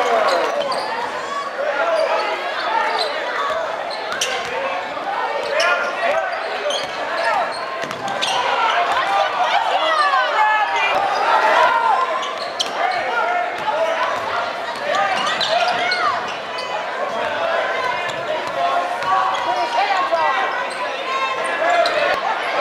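Live basketball game sound in a gymnasium: a crowd of spectators talking and shouting over each other, with a basketball bouncing on the hardwood court.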